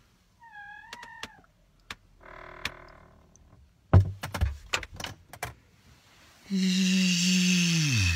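Knocks and bumps in the middle as a man moves about in a cramped wardrobe, then a man's voice holding one long low wordless note for about a second and a half, dropping in pitch as it ends. A brief high squeak comes early on.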